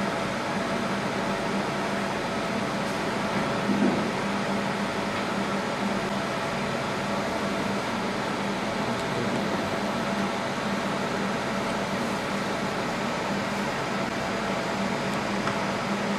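Fiber laser marking machine running while it engraves a stainless steel plate: a steady hum of its fans and electronics with faint constant whining tones.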